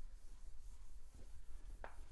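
Chalkboard eraser wiping across a chalkboard in repeated back-and-forth strokes, a faint swishing rub.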